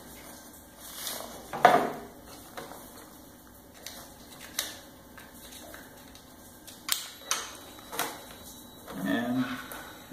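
Plastic electrical connectors and wiring being handled and plugged together on a workbench: a few sharp clicks and knocks, the loudest about two seconds in.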